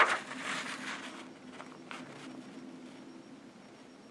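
Faint rustle of paper pages of a large service manual being handled. It fades within about a second, leaving a few soft ticks over a low steady hum.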